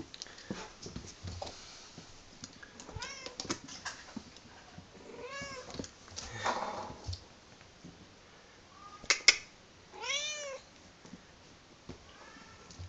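Bengal kitten meowing about four times, short high calls that rise and fall in pitch. Two sharp clicks about three quarters of the way through are the loudest sounds, with lighter taps and clicks throughout.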